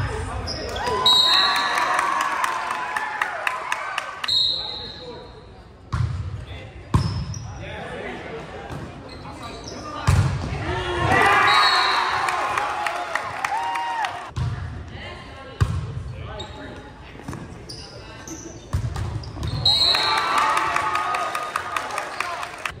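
Volleyball game sounds in a gymnasium: a string of sharp smacks and thuds as the ball is hit and strikes the hardwood floor, echoing in the large hall. Players' voices call out in several stretches between the hits.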